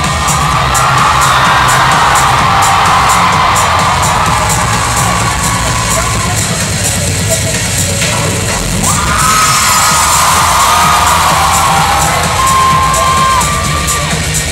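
Music with a steady beat playing through a large hall's sound system, with the audience cheering and shouting in two swells: one from the start and another about nine seconds in.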